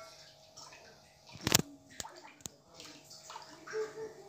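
Metal spoon stirring rice simmering in milk in a pot, a soft wet sloshing, with a few sharp clicks of the spoon against the pot, the loudest about one and a half seconds in. The stirring keeps the rice from sticking and burning on the bottom.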